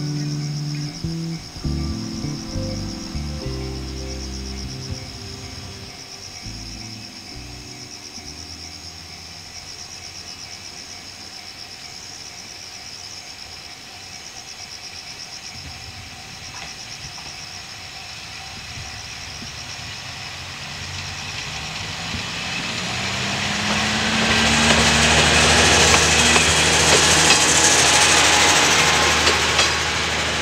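Kanto Railway Jōsō Line diesel railcar (KiHa 2200 series) pulling away and passing close by. Its engine note rises and the engine and wheel noise build to the loudest part over the last several seconds. Crickets chirp steadily in the background, plainest in the quieter middle.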